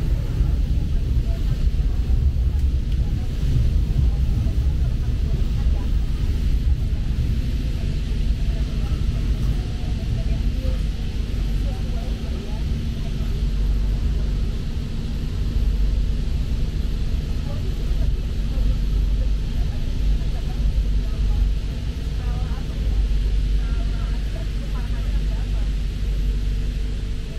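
Steady low rumble of a passenger train carriage heard from inside, the train running along the track.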